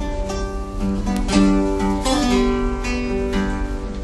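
Two acoustic guitars, a steel-string and a nylon-string classical guitar, playing an instrumental passage of strummed and picked chords that ring on between strokes.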